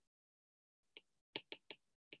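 Faint clicks of a stylus tapping on a tablet screen while handwriting: four short ticks in the second half.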